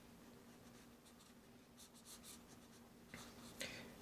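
Faint scratching of a chisel-tip felt marker drawn across sketchbook paper in several short strokes, mostly in the second half.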